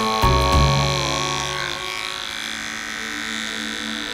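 Small electric hair clippers buzzing steadily as they shave the fur off a mouse before surgery, over background music.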